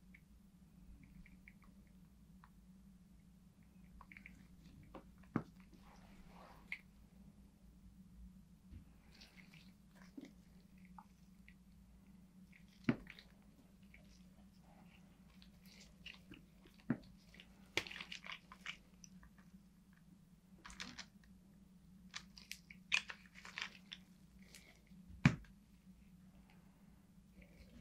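Faint handling noises at a craft table: scattered small clicks, taps and crackles of gloved hands and little plastic alcohol-ink bottles, the sharpest about halfway through and just before the end, over a steady low hum.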